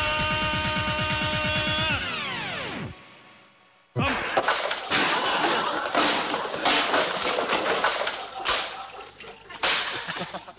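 Music with a fast beat winds down and stops with a falling pitch, like a tape slowing to a halt. After about a second of quiet, a loud run of whacks, thumps and crashes from a slapstick scuffle starts suddenly.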